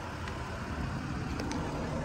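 Jeep Grand Cherokee engine idling: a low, steady rumble under a soft hiss.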